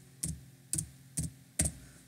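Computer keyboard keystrokes: four separate key clicks about half a second apart, typing the closing characters of a line of code.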